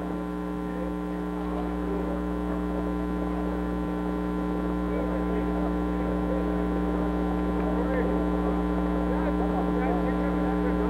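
Steady electrical mains hum with many overtones, the loudest thing throughout, over faint, indistinct background sounds.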